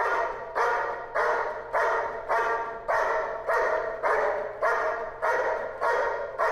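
German Shepherd barking at the helper in a bark-and-hold in the protection blind: a steady, even run of just under two barks a second, each with a short echo. Really nice barking.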